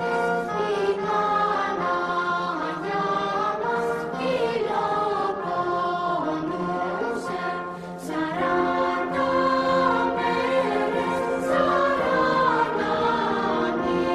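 Background music: a group of voices singing together over a steady low drone, with a short lull between phrases about eight seconds in.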